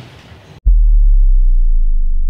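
A loud, low, steady humming tone, a sound effect added in editing, starts abruptly about half a second in and cuts out the original room sound entirely.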